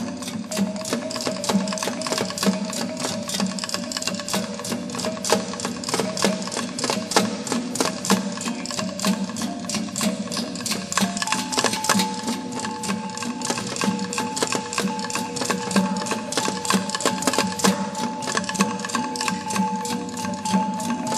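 Southern Philippine gong ensemble music: fast, even percussion strikes over sustained ringing gong tones, with a higher gong tone coming in a little past halfway.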